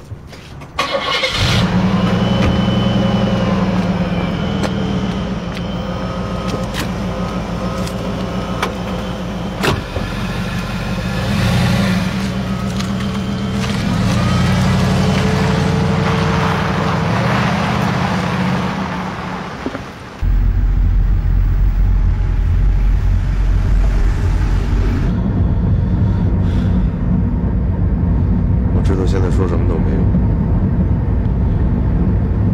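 A black stretch limousine's engine running as the car pulls away and drives off. About two-thirds of the way through, the sound changes abruptly to a heavier, steady low rumble.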